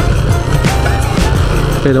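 Motorcycle riding noise on a rough, potholed paved road: a steady mix of engine, wind and tyre rumble. Background music plays over it.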